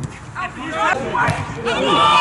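Men's voices at a football match, exclaiming and talking over the play, with background chatter from other spectators.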